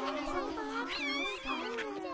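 Cartoon babies cooing and whimpering, several high voices sliding up and down in pitch and overlapping.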